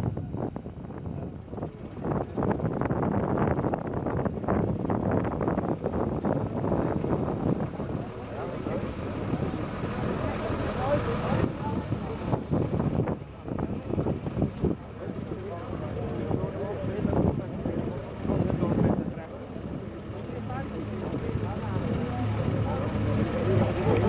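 Fendt tractor engines running with Claas haymaking machines hitched; in the second part a Claas Liner 2900 twin-rotor rake hydraulically lifts and folds its rotor arms. Voices of onlookers mix in.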